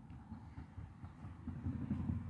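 Faint, uneven low rumble of outdoor background noise, growing slightly louder toward the end.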